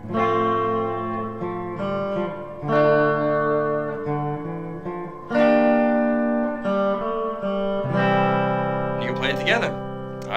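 Les Paul Custom electric guitar played with single picked notes, each let ring, followed by strummed chords, mixing melody notes and chords in a slow 1950s doo-wop progression. Fresh strikes come about every one to three seconds.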